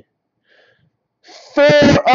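Near silence, then about one and a half seconds in a man's voice, breathy at its start, begins reading out a card's serial number.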